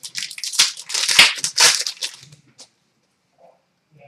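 Trading-card pack wrapper crinkling and tearing as it is opened by hand, a rapid crackle that stops about two and a half seconds in.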